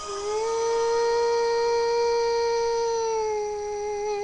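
A singer holding one long sung note, sliding up into the pitch at the start and sinking slightly into a wavering vibrato near the end.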